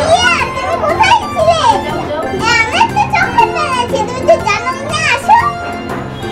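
A young child's high voice calling out in several loud bursts, the pitch sweeping up and down, over steady background music.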